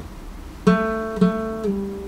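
Nylon-string classical guitar played slowly, one note at a time: after a short pause a note is plucked and left to ring, plucked again, then the line steps down to a slightly lower note.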